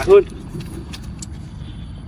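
A man's voice finishes a word at the very start, then a low, steady rumble of outdoor background noise with a few faint clicks.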